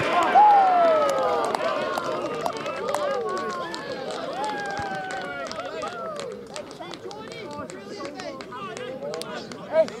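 Several men cheering and shouting together as a goal goes in, loudest about half a second in and dying away over the next several seconds.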